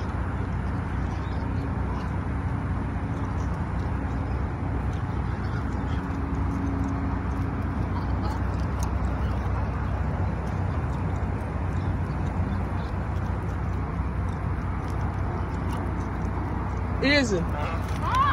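Steady low rumble of an idling car, heard from inside the car, holding an even level throughout.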